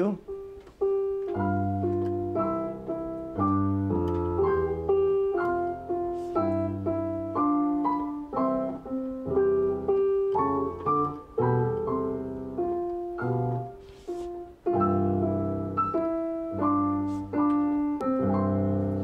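Digital stage piano played four-hands by a child and an adult: a simple melody in the middle of the keyboard over low bass notes and chords struck at a steady pace, with a short break about fourteen seconds in.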